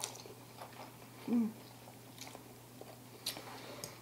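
Quiet close-up chewing of soft instant ramen noodles, with faint scattered wet mouth clicks and a short hummed "mm" about a second in.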